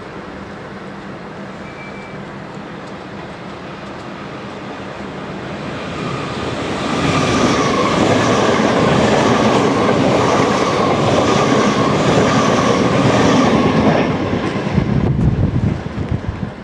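NS VIRM double-deck electric intercity train passing through the station at speed: it builds up over the first seconds, is loudest from about seven to fourteen seconds with a regular clatter of wheels over the rail joints, then dies away as the last carriage passes. Under it runs the steady low hum of the waiting DM'90 diesel railcar idling.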